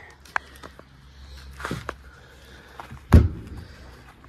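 Travel trailer's exterior storage compartment door being swung shut, with a few light clicks and knocks before it closes with one loud slam about three seconds in.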